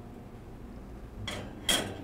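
Quiet room tone, then two short clatters about a second and a half in, the second louder: a metal mold and plate being handled at a commercial oven.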